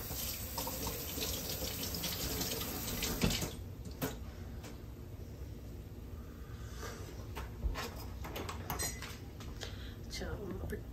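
A steady watery hiss, strongest for the first three and a half seconds and then fainter, with a few light knocks later on.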